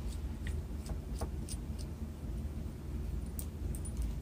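Faint scattered ticks and light scrapes of a solid-brass Fisher Bullet Space Pen's barrel being unscrewed by hand at its threads, over a low steady hum.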